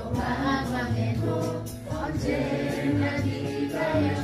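Korean gospel song playing: singing voices carrying a slow, held melody over steady instrumental backing.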